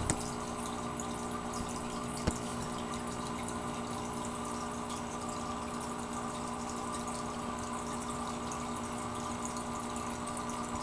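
Aquarium filter running: a steady hum with water trickling, and one click about two seconds in.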